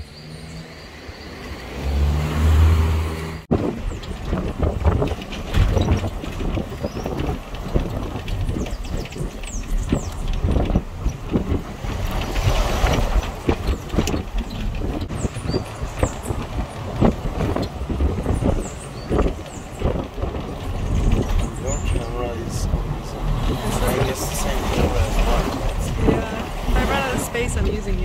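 A car driving on a road, its engine and road noise running steadily and rising and falling, with a sudden cut about three and a half seconds in.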